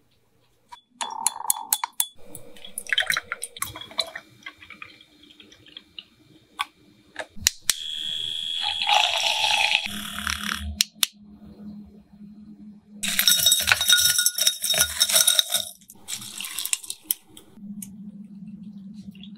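Drink-making sounds: sharp glass clinks and liquid splashing and pouring into glass jars. About ten seconds in, a handheld milk frother's small motor hums steadily as it whisks milk in a jar.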